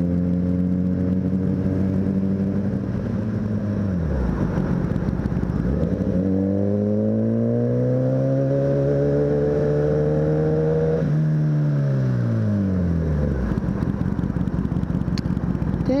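Sport motorcycle engine heard from the rider's camera: running at a steady pitch, dropping away about four seconds in, then rising steadily in pitch as it accelerates for about five seconds before falling away again, leaving only wind and road rush near the end.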